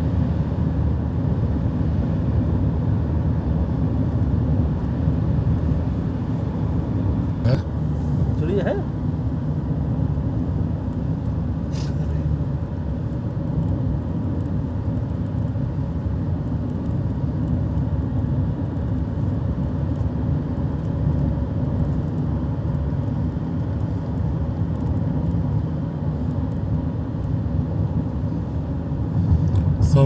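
Steady low rumble of road and engine noise heard from inside a moving vehicle's cabin. A brief rising sound comes about eight seconds in.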